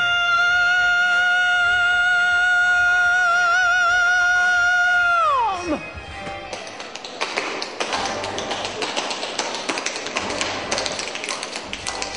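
A singer holds one long high note with vibrato, which slides steeply down and stops about five and a half seconds in. Then fast, dense tap-dance footwork clatters over backing music.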